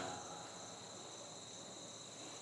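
Faint, steady high-pitched chorus of crickets, with the end of a man's voice dying away at the start.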